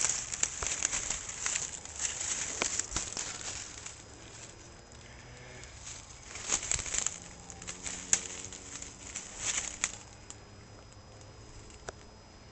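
Dry leaf litter rustling and crackling in irregular bursts as it is stepped through and disturbed. It is busiest in the first few seconds, then comes in scattered short bursts.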